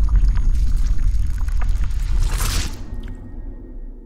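Logo-animation sound effect: a deep rumble with scattered crackles and a bright splash-like whoosh about two and a half seconds in, then fading away.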